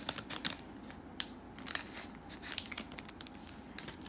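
Hands handling trading cards and their plastic packaging or sleeves: irregular small clicks and rustles.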